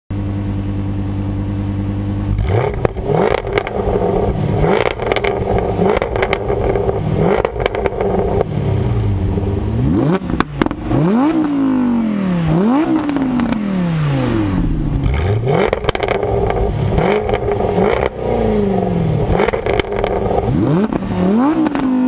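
Exhausts of an Audi R8 Plus V10 and a Jaguar F-Type R supercharged V8, stationary: a steady idle for about two seconds, then revved again and again in quick blips. Each rev rises sharply and falls away, with sharp cracks and pops on the overrun.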